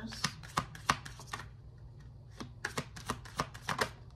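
A deck of tarot cards being shuffled by hand: quick runs of card flicks and snaps in two spells, with a short pause a little before halfway.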